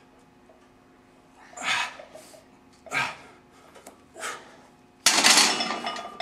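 A loaded barbell pressed overhead for reps, with a sharp forceful breath on each rep about every second and a half. About five seconds in, the bar comes down onto the rack with a loud metallic clank and a ringing rattle of the plates.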